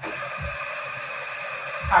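Coffee-bar equipment starts up abruptly and runs with a steady hiss and a thin high whistling tone.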